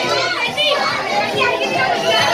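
A group of boys shouting and yelling together over music.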